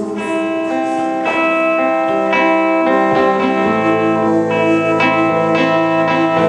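Solo electric guitar played live through an amplifier: an instrumental passage of picked chords and single notes left to ring, with a new chord or note about every half second to a second.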